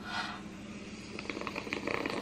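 A soft scrape, then a quickening run of small clicks and taps over a steady low hum.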